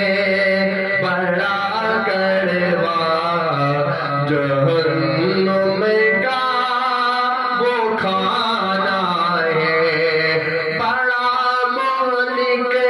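A man singing an Urdu naat into a microphone, holding long notes that bend and waver in pitch, with a fresh phrase beginning near the end.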